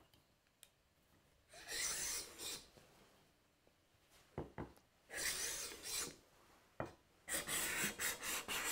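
Cabinet scraper pushed along a wooden board in three passes, its blade rasping across the surface. The blade has just been set to engage by a turn of the thumb screw. A few sharp knocks come between the passes.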